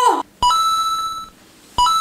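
Edited-in electronic beep sound effect, sounded twice: each time a click and a short lower blip, then a steady higher beep held for under a second.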